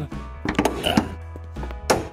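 Background music, with a few light clicks and then one sharp clunk near the end as the 2014 Ford Mustang GT's hood safety catch releases and the hood comes free.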